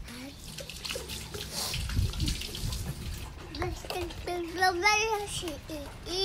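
A toddler's high voice making short sung or babbled sounds, mostly in the second half, over a rushing hiss in the first half.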